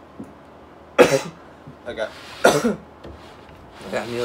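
A man coughing hard while chugging a gallon of milk: two loud coughs about a second and a half apart with a smaller one between, and a short voiced sound at the very end.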